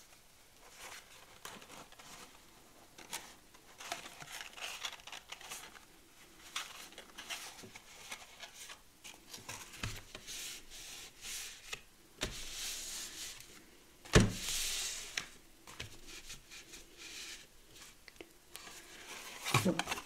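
Paper and cardstock being handled on a craft mat: scattered light rustles and taps, with longer rustling about twelve and fourteen seconds in and a sharp knock just after fourteen seconds.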